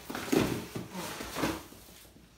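Cardboard shipping box being lifted and tilted, with the small paperboard soap boxes inside shifting and knocking against each other and the box walls: a few short rustling knocks about half a second in and again around one and a half seconds, then fading.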